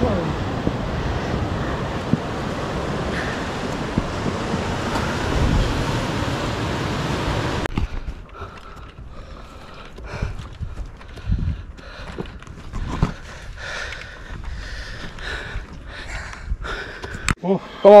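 Steady rush of wind on the microphone for about eight seconds, then an abrupt cut to a quieter stretch of scattered knocks and faint, indistinct voices.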